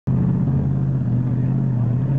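Formula Offroad buggy's engine held at high, steady revs as it powers up a sandy hill climb with its wheels spinning.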